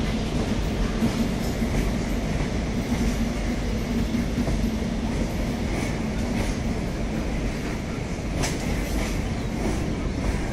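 Freight train of BTPN petroleum tank wagons rolling past at reduced speed: a steady wheel rumble on the rails with a low hum and light clicking of wheels over rail joints. One sharper clank near the end.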